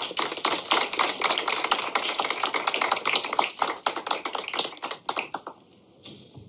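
Audience applauding: a dense run of claps that thins out and dies away about five seconds in.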